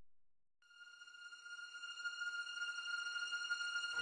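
The tail of background music fades out, and about half a second in a single steady high-pitched tone with overtones begins, holding one pitch and slowly growing louder until it cuts off at the end.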